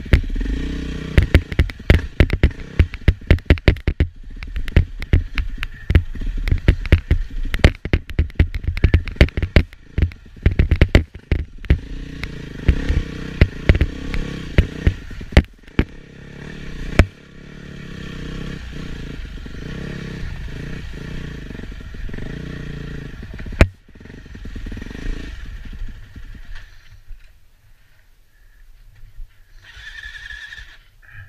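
Enduro motorcycle engine running over a rough trail, with many sharp knocks and clatter in the first half as the bike jolts over rocks. The engine then runs more steadily and drops much quieter over the last few seconds.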